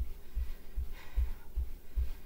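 Bare feet thudding on a carpeted floor while walking in place, a steady beat of about two and a half steps a second, with a heavy exhaled breath about a second in.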